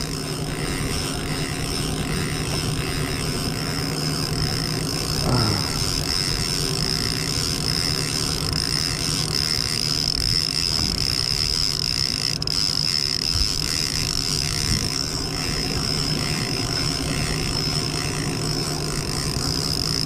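Small Mercury outboard motor running steadily at trolling speed: an even, unbroken drone with a thin high tone held above it.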